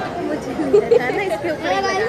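Several people talking at once: crowd chatter of voices, with no other sound standing out.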